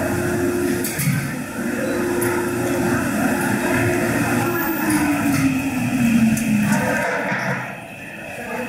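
Busy exhibit-hall ambience of people talking in the background, over a steady hum that slides lower in pitch from about four seconds in.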